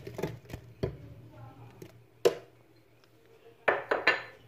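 Pieces of chopped apple dropping into a plastic blender jar: a scatter of light knocks, the sharpest a little over two seconds in and two more close together near the end.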